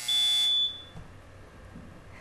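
Quiz-show buzzer sounding once as a contestant buzzes in to answer. It is a single loud electronic tone, about two-thirds of a second long, that starts and cuts off abruptly.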